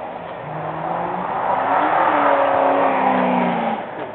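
A car engine revving up and dropping back, rising in pitch and loudness to a peak in the second half and then falling away near the end.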